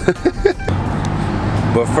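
A short laugh, then about two-thirds of a second in an abrupt switch to steady street traffic noise, an even rush with a low hum underneath.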